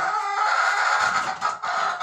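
Chickens in a henhouse calling, a drawn-out, sustained call that dips about a second and a half in.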